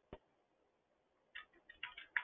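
Faint clicks of a computer keyboard and mouse: one sharp click just after the start, then a quick run of keystrokes in the second half.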